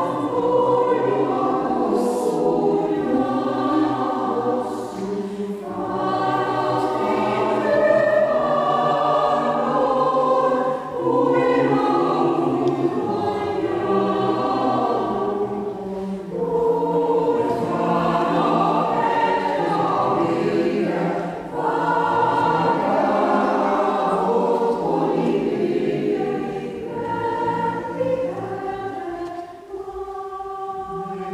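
Mixed choir of men's and women's voices singing unaccompanied, in sustained phrases with short pauses between them.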